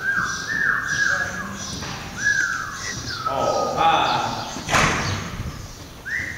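A person's drawn-out, falling calls urging a loose horse on, repeated several times, over small birds chirping. A single sharp crack comes near the end.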